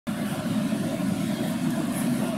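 Steady background din of a crowded indoor exhibition hall: many people moving and talking, blended into an even, low-pitched wash with no single voice standing out.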